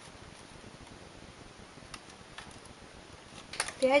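Faint, scattered small clicks of a metal transfer tool and latch needles on a knitting machine's needle bed as stitches are moved by hand for a cable cross, over low room hiss.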